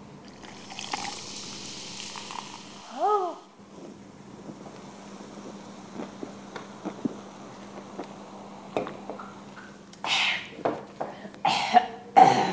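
Cola poured from a can into a glass, a soft fizzing hiss for about two seconds, followed by a short rising vocal note. Then small sips and swallows, and near the end short breathy cough-like outbursts after drinking.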